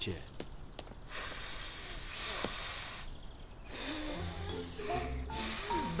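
Children blowing out hard through their mouths: several long, breathy puffs one after another, to blow their anger away. Soft background music comes in about two-thirds of the way through.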